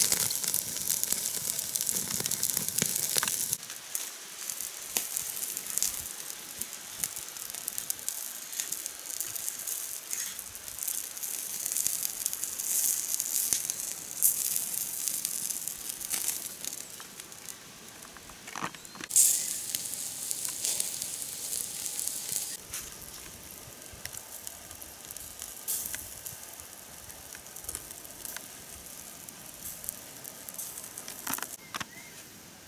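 Meat roasting over hot wood embers: fat sizzling and the fire crackling, with scattered sharp pops, loudest in the first few seconds.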